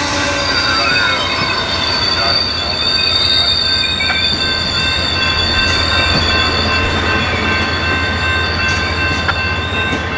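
Amtrak Superliner bilevel passenger cars rolling past, their steel wheels squealing on the rails in several steady high-pitched tones over a low rumble.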